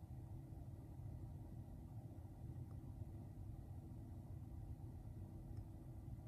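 Near silence: faint, steady low hum of room tone inside the parked car.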